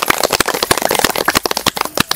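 A group of people clapping their hands in applause: dense, irregular claps that stop just before the end.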